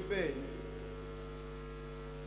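Steady electrical mains hum: a low, even buzz of several fixed tones, left alone once a man's voice trails off just after the start.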